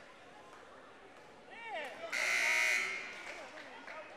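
Gymnasium buzzer sounding once, a steady loud buzz lasting a little under a second, about two seconds in.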